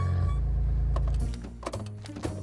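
Low rumble of a cartoon car's engine as it pulls up, cutting off after about a second and a quarter, followed by a couple of light knocks as the occupants get out, over background music.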